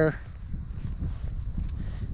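An uneven low rumble on the microphone of a handheld camera, with a few faint ticks. The tail of a man's word is heard at the very start.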